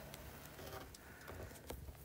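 Quiet outdoor background with a low hum and a few faint light ticks late on.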